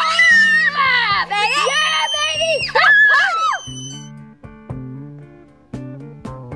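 Children shouting and cheering excitedly over guitar music. The shouting stops about three and a half seconds in, and only the plucked guitar music goes on.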